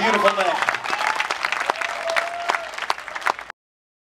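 A voice trails off in the first half second, then an audience claps and cheers at the end of a live band's song. The sound cuts off suddenly about three and a half seconds in.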